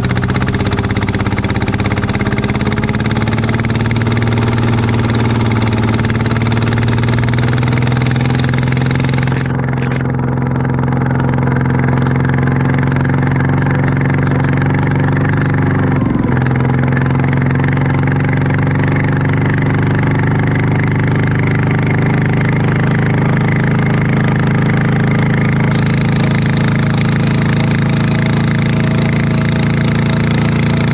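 Diesel engine of a ride-on paddy-field tractor running hard under load as its wheels churn through deep mud, after being tuned for more power. A steady heavy drone whose pitch dips briefly about halfway through, then slowly climbs.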